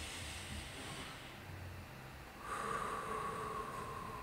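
A man's deep meditative breathing: a long inhale through the nose, then after a short pause a louder, longer exhale out through the mouth.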